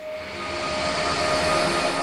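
A logo-intro sound effect: a rushing, swelling whoosh with a steady tone running through it, building up over the first second or so.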